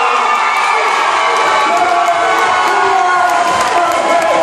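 Crowd cheering and shouting, many voices at once.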